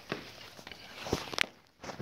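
A few sharp taps and thumps on a tile floor, clustered in the second half, with the loudest about a second and a half in.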